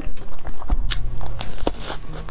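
A person biting into and chewing a chocolate-coated macaron cake with a soft, runny filling, close to a clip-on microphone: a string of sharp, wet mouth clicks and smacks.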